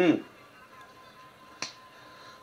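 A single short, sharp snap about one and a half seconds in, over a lull with only a faint steady tone in the background.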